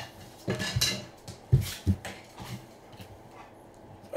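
Rigid plastic card holders (top loaders) clicking and tapping as they are handled and set down on a stack, in a string of short, irregular taps.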